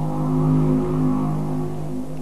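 Diesel engine of a log-debarking machine running steadily under work, a constant engine drone with a fast low pulsing beneath it.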